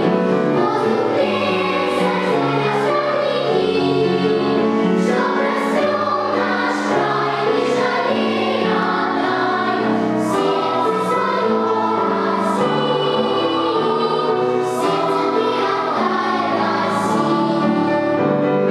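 Children's choir singing sustained, legato phrases, with crisp 's' sounds from the massed voices now and then.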